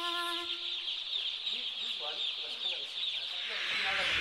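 A flock of young chicks peeping continuously, a dense chorus of short, high, falling cheeps.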